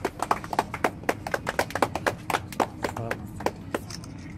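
A small crowd applauding with scattered, uneven hand claps that thin out near the end.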